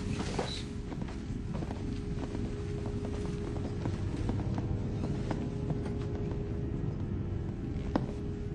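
Film soundtrack: a low, steady rumbling drone with a constant hum, scattered faint clicks and knocks on top, and music underneath.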